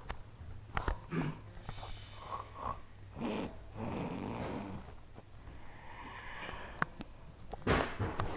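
A person making pretend snoring sounds, with a few knocks and rustles; a sharp knock near the end is the loudest moment.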